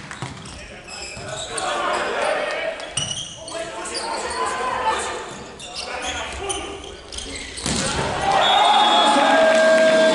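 Volleyball rally in an indoor arena: sharp hand-on-ball smacks of the serve, passes and attack echo in the hall among crowd voices. The noise gets louder near the end.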